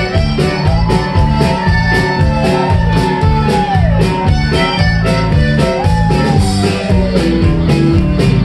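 Live Tex-Mex band playing an instrumental passage: piano accordion, twelve-string guitar, bass guitar and drums over a steady beat, with a lead line that slides up and down in pitch.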